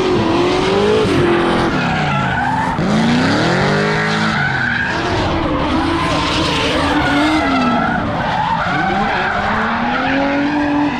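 Drift cars on track: their engines rev up and down over and over, rising and falling in pitch as they slide, with tyre squeal over the top.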